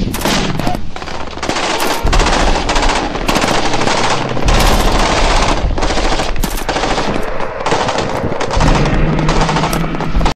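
Automatic rifle fire from a bipod-mounted rifle: long rapid bursts of shots with short pauses between them.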